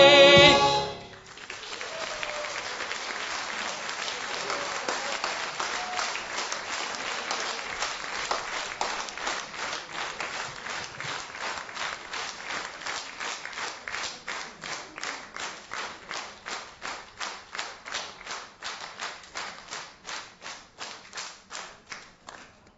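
A male singer's final held note, with vibrato, ends about a second in. Theatre audience applause follows and gradually settles into rhythmic clapping in unison, fading away near the end.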